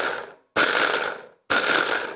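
Stick blender's chopper attachment pulsed in short bursts, three times, each under a second, coarsely chopping soaked dried shrimp.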